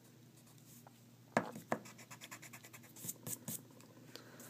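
Graphite pencil scratching on paper in a few short, separate strokes, as quick lines are drawn; the loudest stroke comes about a second and a half in, with a quick run of lighter scratches near the end.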